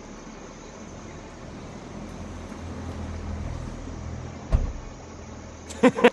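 A low hum that swells over a few seconds, then a single sharp thud about four and a half seconds in, like a car door shutting.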